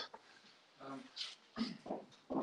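A few faint, brief voice sounds, quiet murmurs rather than clear words, in a quiet room.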